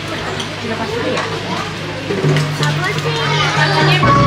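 Many children and adults chattering at once, with music playing underneath that gets louder about halfway through.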